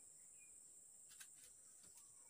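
Near silence with a faint, steady, high-pitched insect drone, typical of crickets, and a few faint ticks and chirps.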